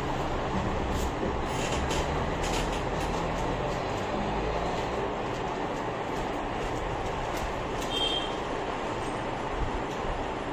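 Steady rumbling background noise, with a few faint clicks in the first few seconds and a brief high tone about eight seconds in.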